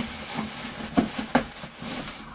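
A hand rummaging through crinkly shredded paper filling inside a cardboard box, rustling, with two short light knocks about a second in.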